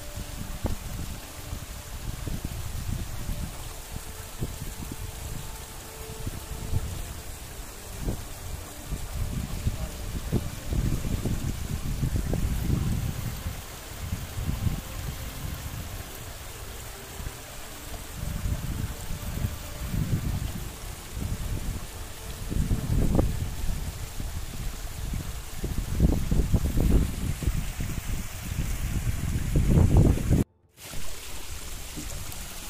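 Wind gusting over the microphone in uneven surges, over a small stream trickling down the rocks.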